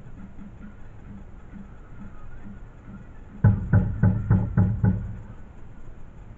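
A drum beaten in a faint steady beat of about two strikes a second, then six loud strikes in quick succession about a third of a second apart.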